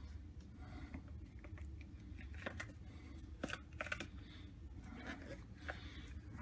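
Clear silicone mold being pulled and peeled off the object it was cast on, stuck on hard, giving faint scattered crackles and clicks as it comes away.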